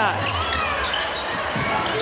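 Basketball being dribbled on a hardwood court, heard over the steady murmur of an arena crowd.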